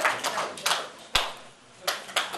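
A small audience clapping for an award, thinning out to scattered claps and a lone clap about a second in.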